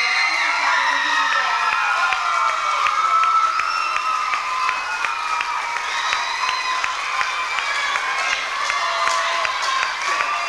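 An audience cheering, whooping and shouting, with many high-pitched young voices holding long cheers over one another. Scattered handclaps run through it.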